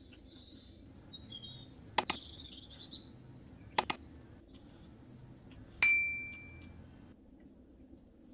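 Birds chirping, then two sharp double mouse clicks about two seconds apart and a loud bell ding that rings out for about a second: the sound effects of a like-and-subscribe overlay.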